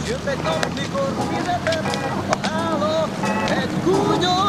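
Several people's voices, overlapping and indistinct, over a steady low hum.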